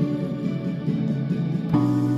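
Chords played on a Yamaha digital piano, held and ringing, with a new chord struck near the end.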